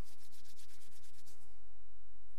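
Palms rubbed briskly together close to a body-worn microphone: a quick run of scratchy strokes, about eight a second, stopping about one and a half seconds in.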